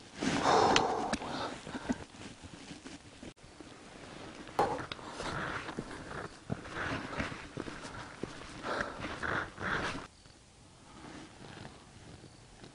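Handling noise of a camera tripod being set up by hand: rustling, scraping and small knocks in uneven bursts as the legs are pulled out and the camera is mounted. It dies down about ten seconds in.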